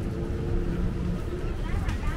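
Busy street-market ambience: a steady low rumble like engine or traffic noise under nearby voices, with a person talking near the end.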